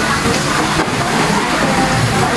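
Meat sizzling in a large metal tray on a portable gas stove: a steady, loud hiss, with restaurant chatter faintly behind.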